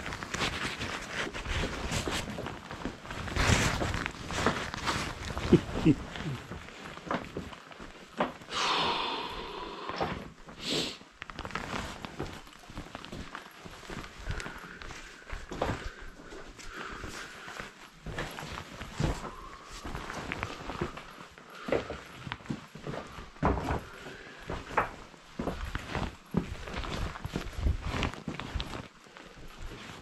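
Footsteps and scuffing on cave rock as a person moves through a passage, in irregular steps with rustling and scrapes of gloves and clothing.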